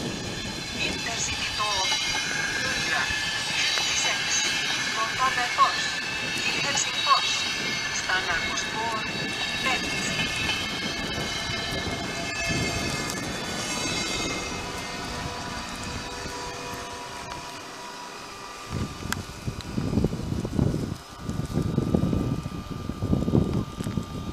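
A VR InterCity double-deck train running into the station and braking, its wheels and brakes squealing in many high tones that fade away after about fifteen seconds. Irregular low rumbling gusts take over in the last few seconds.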